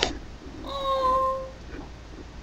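A domestic cat meowing once, a steady drawn-out call of under a second, slightly falling at its end. A brief knock comes right at the start.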